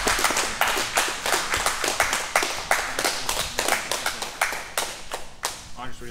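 A roomful of people clapping in a fast, dense patter that thins out and dies away near the end.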